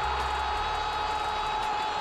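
A single sustained tone with overtones, held at one unchanging pitch over a steady hiss of background noise.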